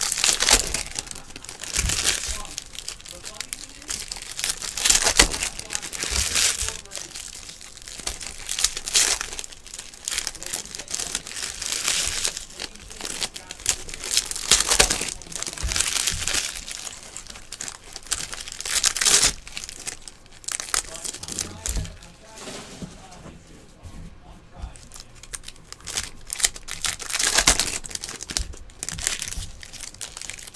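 Foil wrappers of trading-card packs crinkling and tearing as they are ripped open by hand, with the cards rustling, in irregular crackles that come louder every few seconds.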